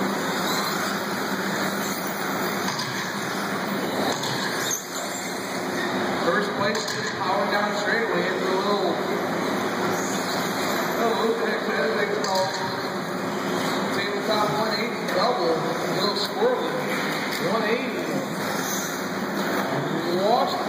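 Electric 1/10-scale 2WD RC buggies racing on an indoor dirt track, a steady running noise of motors and tyres, with indistinct voices over it.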